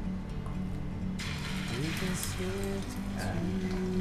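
Hot cooking oil starting to sizzle about a second in, as an egg-dipped slice of beef luncheon meat is laid into the frying pan, under background music with held notes.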